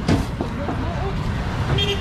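Steady low rumble of road traffic, with faint snatches of talk and a short knock at the very start; a voice comes in near the end.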